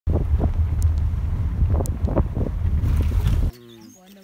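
Wind buffeting a handheld phone microphone: a loud, low rumble that swells in gusts, cutting off abruptly about three and a half seconds in, after which faint voices are heard.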